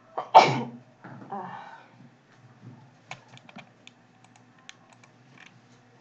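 A person gives one loud cough, then a softer second one about a second later, followed a few seconds in by a run of light, irregular clicks at a computer keyboard and mouse.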